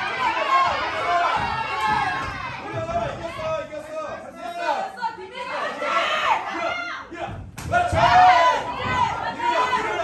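Several voices shouting over one another from ringside, yelling encouragement and instructions at the fighters, with a single sharp smack about three-quarters of the way through.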